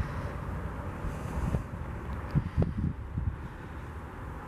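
Wind rumbling unevenly on a handheld camera's microphone outdoors, with a few faint knocks near the middle.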